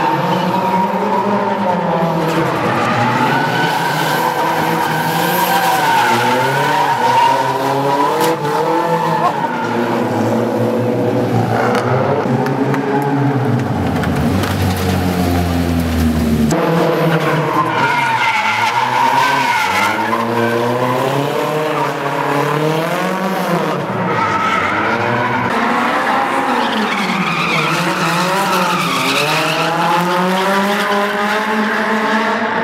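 Drift cars sliding in tandem, engines revving up and down continuously as the throttle is worked, with tyres skidding and squealing. About halfway through, one car passes very close with a deep rumble that cuts off suddenly.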